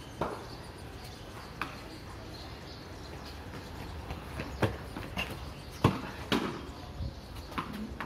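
About half a dozen sharp, irregular knocks from tennis-ball cricket on a hard tiled courtyard: the ball striking the ground, bat and walls. The loudest knock comes about six seconds in, over a steady low background noise.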